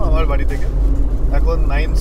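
Steady low rumble of road and engine noise inside a moving Tata Tiago diesel hatchback at highway speed.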